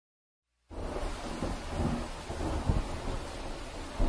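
Rain with low rumbling thunder, cutting in abruptly out of silence just under a second in.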